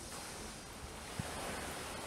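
Steady rushing outdoor noise of wind and sea along a rocky shore, with a brief soft thump about a second in.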